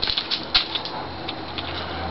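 A scatter of small, sharp clicks and taps, with one sharper tick about half a second in.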